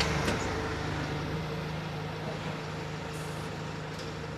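Bus engine running as the bus moves off, a steady hum that slowly fades.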